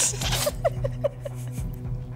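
A woman giggling in a quick run of about five short, high squeaks, after a breathy burst of laughter at the start. A steady background music bed runs underneath.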